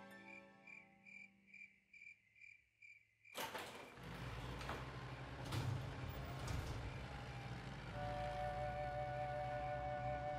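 Cartoon night ambience: crickets chirping in short high pulses about twice a second as soft background music fades out. A few seconds in, a steady low rumble with a few knocks starts, and near the end soft sustained flute-like music notes come in.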